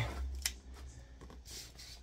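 Faint handling noises of a cardboard box being picked up: a single sharp click about half a second in, then a few light rustles, over a low steady hum.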